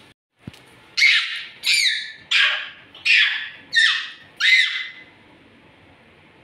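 A toddler shrieking: six shrill squeals in quick succession, each falling in pitch, about one every 0.7 s.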